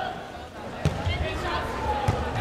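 Arena crowd noise with voices calling out, and a sharp smack a little under a second in as the volleyball is struck on the serve.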